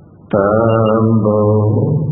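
Buddhist paritta chanting in Pali. After a brief pause, a long chanted line starts sharply about a third of a second in and is held on a steady pitch, breaking off just before the end.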